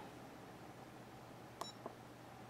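Faint hiss, then about one and a half seconds in a short click with a brief high beep, followed by a smaller click: a key press on a RigExpert AA-54 antenna analyzer, starting an SWR sweep.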